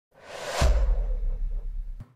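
Logo-sting sound effect: a whoosh that swells over about half a second into a deep boom, whose low rumble fades over the next second and a half.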